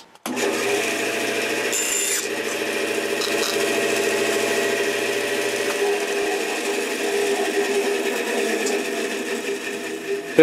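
Bandsaw switching on and running steadily while its blade cuts a 7/16-inch wooden dowel to length.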